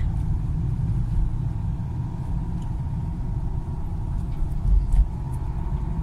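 A car in motion heard from inside the cabin: a steady low rumble of engine and road noise, with a brief louder low bump about five seconds in.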